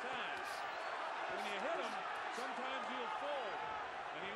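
Boxing arena crowd during a bout: a steady murmur of many voices with scattered faint calls, and a few faint short knocks.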